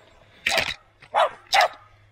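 A small dog barking three times in quick succession, sharp and loud.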